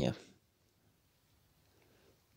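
A man's voice finishing a word, then near silence.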